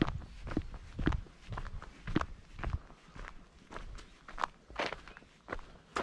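Footsteps on a dirt woodland path, a steady walking pace of about two steps a second.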